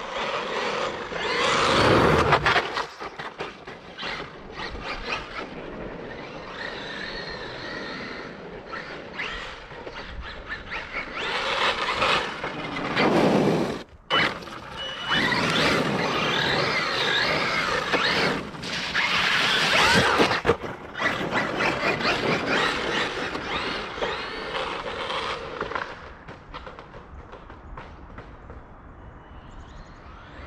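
Traxxas Maxx RC monster truck driving past repeatedly: its brushless electric motor whines, rising and falling in pitch as it speeds up and slows, over tyre noise on wet pavement. The loudest passes come near the start, around the middle and about two-thirds through, and the sound dies away near the end.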